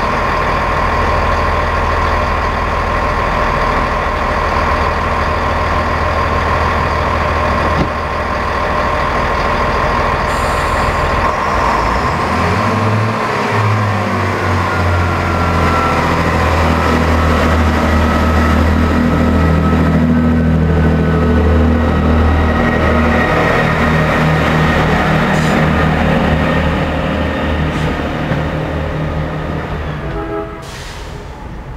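First Great Western Class 165 diesel multiple unit idling with a steady low hum and a high whine. About twelve seconds in its engines open up and the engine note climbs as the train pulls away from the platform, then the sound thins out as it draws off near the end.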